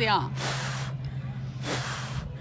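A person blowing hard puffs of breath at a dandelion seed head: two rushing hisses, one about half a second in and another near the end.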